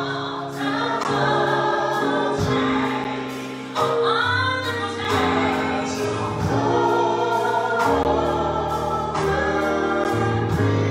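Gospel song sung by a small group of singers with band accompaniment: held bass notes under the voices and regular drum hits.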